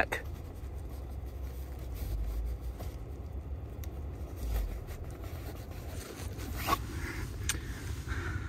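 Cabin air filter being slid back into its plastic housing: faint scraping and handling noise over a low rumble, with a couple of sharp clicks near the end.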